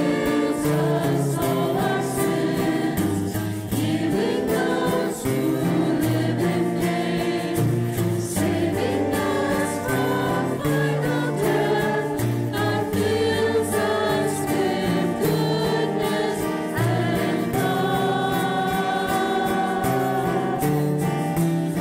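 A small church choir singing a hymn in held, sustained notes, the offertory hymn of the Mass.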